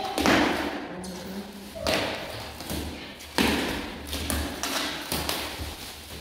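Plastic stretch wrap being peeled and ripped off a wooden wardrobe, in several separate rips with short pauses between.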